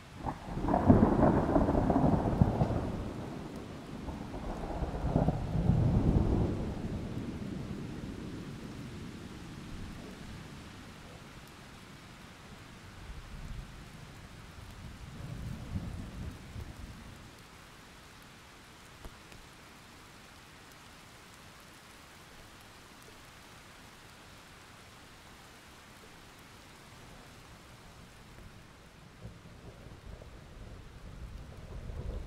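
Thunder in a heavy rainstorm: a loud rumble breaks right at the start, swells again a few seconds later and rolls away over about ten seconds, with a fainter rumble in the middle. Steady rain hiss runs underneath, and another rumble starts building near the end.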